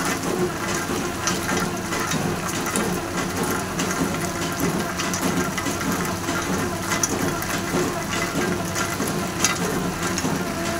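Automatic batasha (jaggery sugar-drop) making machine running with its conveyor belt: a steady mechanical hum and rush with frequent light clicks.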